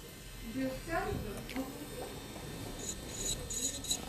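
Quiet, steady hum of an electric manicure drill fitted with a carbide bit, running at the nail, with a faint murmured voice about a second in.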